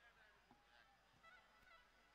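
Near silence: faint background with a few brief, faint high-pitched sounds.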